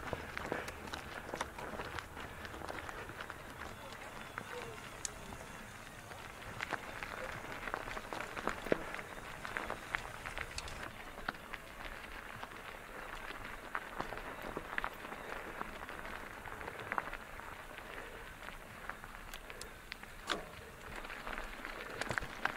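Mountain bike tyres rolling over a loose gravel track, a faint steady crunch scattered with many small clicks and rattles from the bike.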